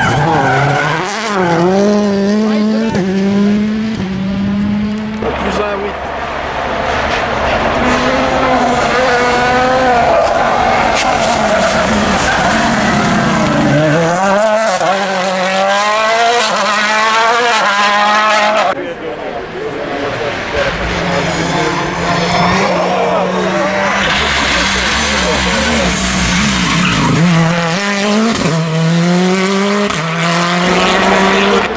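World Rally Cars with 1.6-litre turbocharged four-cylinder engines, a Citroën C3 WRC and a Toyota Yaris WRC among them, passing flat out one after another. The engine pitch climbs and drops sharply through each gear change, and the tyres skid on the tarmac. The sound breaks off abruptly between passes a few times.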